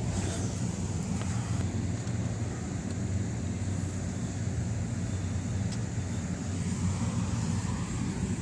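A car engine idling close by: a steady low hum that holds even throughout.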